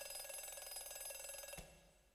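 A faint bell ringing rapidly at one steady pitch, cut off abruptly about one and a half seconds in.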